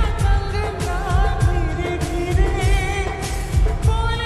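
Slowed-down, reverb-heavy lofi edit of a Bollywood film song: a singer's voice, wavering in pitch, over a steady beat.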